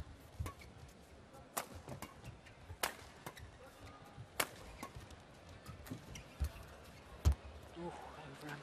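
Badminton rackets striking a shuttlecock in a doubles rally: sharp cracks about every second and a half, with fainter clicks in between. A dull thump near the end is the loudest sound.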